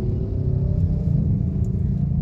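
Inside the cabin of a Hyundai Stargazer pulling away gently at low speed: a steady low rumble of road and engine noise.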